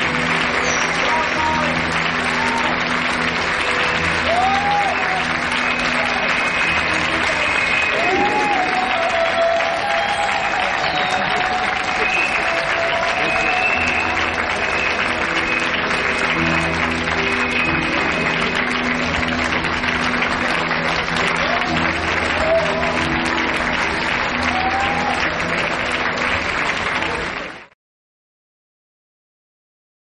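Audience applauding over loud music with a repeating low pulse, the crowd noise and music running together until both cut off suddenly near the end.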